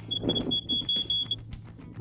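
Smartphone telemetry app sounding its alarm: a rapid run of high-pitched beeps that stops about a second and a half in. The alarm signals that a set telemetry limit has been passed, which he believes is the truck's over-temperature alarm.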